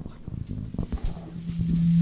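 A handheld microphone being handled through the PA: knocks and rubbing, then about a second in a hiss and a steady low hum come in and stop sharply.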